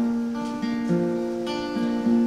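Acoustic guitar strumming a chord accompaniment to a folk ballad between sung lines, the chords ringing on with a new stroke about every half second.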